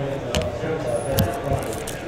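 Hands handling trading cards and a foil card pack on a table, with two soft thumps, about a third of a second in and just after a second, over faint background voices.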